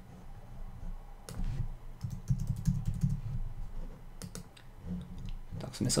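Typing on a computer keyboard: a run of irregular keystrokes with soft low thuds as a short word is typed and the cursor is moved.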